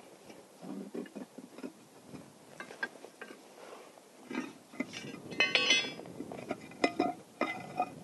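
A steel bar clinking and scraping on the metal cover of an underground fire hydrant pit as the cover is levered open. There are scattered knocks and one ringing metallic clang about five and a half seconds in.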